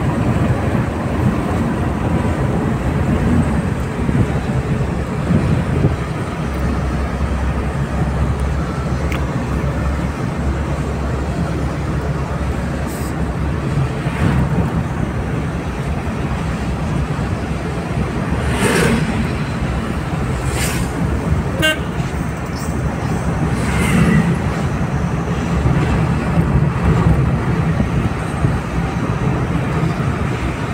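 Steady road and engine rumble of a vehicle driving along a highway, with a few short horn toots about two-thirds of the way through.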